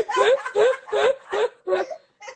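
A woman laughing in a run of about five short chuckles, each rising in pitch, the last ones softer.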